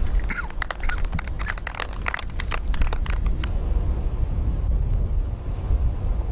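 Birds chirping and calling in a quick run of short, sharp notes for the first three and a half seconds, over a steady low outdoor rumble.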